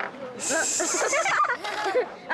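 Voices of people and children talking around a game table. About half a second in there is a high hiss lasting roughly a second.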